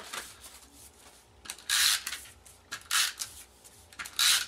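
Paper and cardstock being handled and slid on a craft mat: two short papery rustles, a longer one about halfway through and a brief one near the three-second mark.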